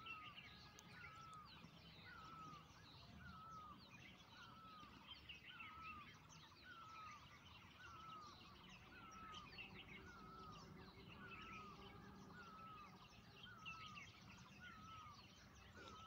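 Faint birdsong: one bird repeats a short call about once a second, with scattered higher chirps from other birds.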